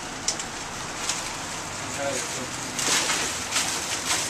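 Black plastic trash bag crinkling and rustling as it is handled, loudest just under three seconds in, over a steady background hiss.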